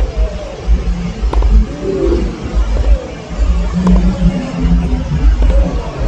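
Tennis balls struck by racquets during a rally on a grass court, a few sharp hits over a steady low rumble.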